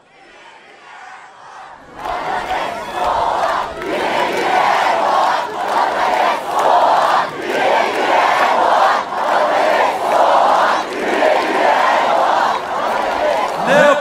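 Large rally crowd chanting in unison, faint at first, then loud from about two seconds in, with a regular beat about once a second.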